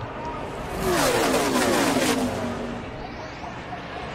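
A pack of NASCAR Truck Series race trucks' V8 engines passing at full racing speed. The engine note swells about a second in and drops in pitch as the trucks go by, then fades to a fainter rush.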